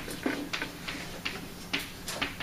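Chalk writing on a blackboard: a quick run of sharp, irregular taps and short scratches as a word is chalked up.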